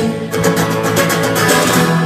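Acoustic guitar strummed in a steady rhythm, its chords ringing.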